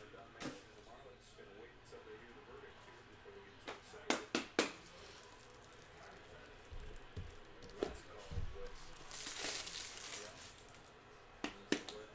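Trading cards and their plastic packaging being handled at a desk: scattered light clicks and taps, a quick cluster of four near the middle, and a crinkling plastic rustle a little later.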